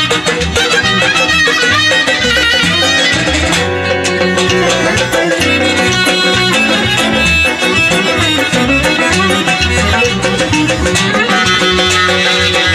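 Azerbaijani folk dance tune (oyun havası) played live on clarinet, with a frame drum (qaval) keeping a steady beat underneath.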